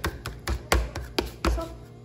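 A metal fork beating egg and tapioca flour in a plastic container, with a handful of quick, irregular taps and clicks as it strikes the container's sides and bottom.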